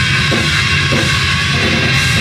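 Live hard rock band playing loudly and without a break: drum kit driving under distorted electric guitars and bass.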